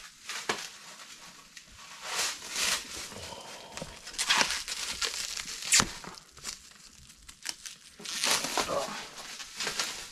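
Clear plastic wrap crinkling and tearing as it is pulled off a new tire. It comes in irregular bursts, with a sharp snap about six seconds in.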